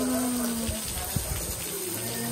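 A dove's low coo, one steady note held for under a second near the start, over a steady outdoor hiss.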